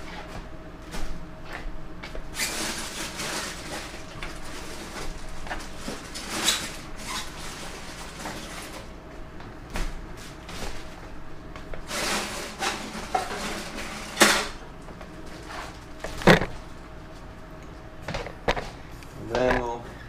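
Handling noise of foil-wrapped sawdust spawn bags being lifted out of aluminium pressure cookers and packed into a plastic tote: rustling and scraping broken by scattered knocks and clatters, the sharpest a little past halfway.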